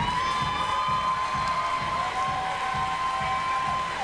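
Audience cheering, with long held high-pitched screams, as the dance music fades out at the end of a routine.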